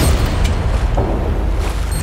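Trailer sound design: a deep boom hits at the start, then a low rumble with a dense rush of noise that swells later on.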